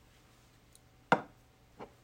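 Two knocks from a small dropper bottle being set down on a hard surface: a sharp one a little past a second in, then a weaker one just before the end.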